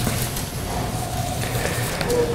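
Steady room noise between sentences: an even hiss with a low hum underneath and a few faint thin tones.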